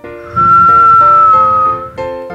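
A long whistled tone falling slightly in pitch, the whistling exhale of a cartoon snoring sound effect, over light children's background music.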